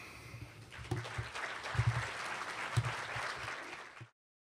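Audience applauding, building up about a second in and cut off suddenly at the end.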